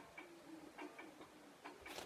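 Near silence: quiet room tone with a few faint light ticks.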